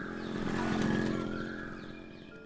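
A motor vehicle's engine droning, swelling to a peak about a second in and then fading away as it passes.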